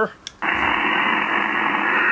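Barrett 4050 HF transceiver's speaker switching on about half a second in with a steady, loud hiss of analog single-sideband receive noise, the band-limited static of the other station's carrier-less voice channel. This is the "mandatory hiss that's always in the background" on analog sideband, which digital voice removes.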